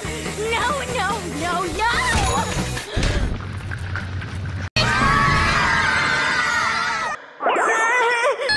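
Cartoon soundtrack: music and a voice, then a cut-out about four and a half seconds in, followed by a character's long scream over music that stops suddenly after about two and a half seconds.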